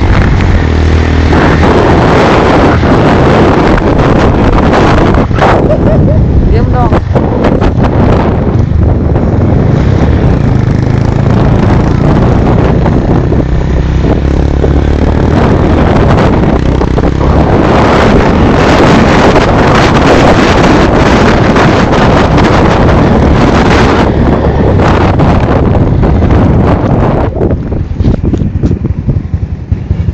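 Motorcycle engine running while riding along a dirt track, under loud wind buffeting on the microphone. Near the end the noise becomes more uneven.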